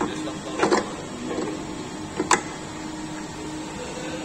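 Metal clinks and knocks as the clutch bell of a Honda PCX scooter's CVT is fitted onto its shaft: a quick cluster of knocks under a second in, then one sharper clank a little after two seconds, over a steady low hum.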